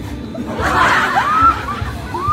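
People chuckling and laughing in short breathy bursts, with music playing in the background.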